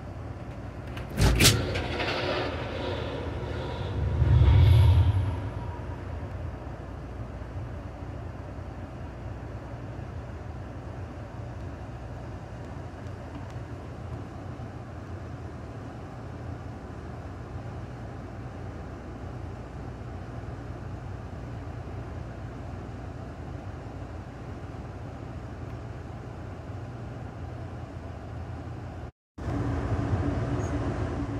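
Steady low rumble of an Amtrak passenger train running along the track, heard from inside the rear car. About a second in there is a sharp knock with a ringing tail, and a few seconds later a heavy low thump.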